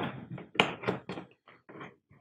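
Handling of a cast-aluminium kayak pedal drive in its plastic hull well: a run of short knocks and clicks, a few per second, dying away just before the end.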